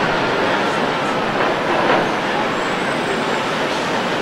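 Steady city street traffic noise: an even wash of passing vehicles with no single event standing out.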